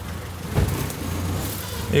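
Low steady hum of a vehicle engine idling, with a single knock about half a second in and a brief rustle near the end.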